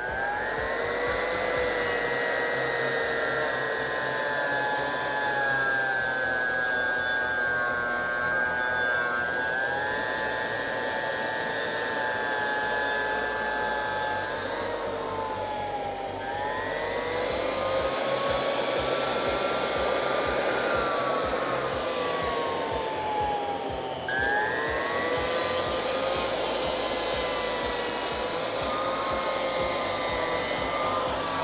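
Leister electric groover's motor running with a steady high whine as it cuts a groove along a floor-sheet seam. Its pitch sags and recovers twice, around the middle and about two-thirds of the way in.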